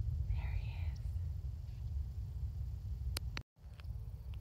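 Steady low rumble of wind buffeting a phone microphone, with a faint whisper-like breath about half a second in. Just after three seconds two faint clicks come, then the audio cuts out completely for a moment: a phone recording glitch.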